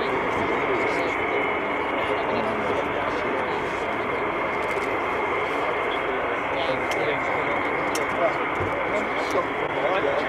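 Lockheed U-2S's single General Electric F118 turbofan running at taxi power: a steady jet noise with a high whine held on one pitch.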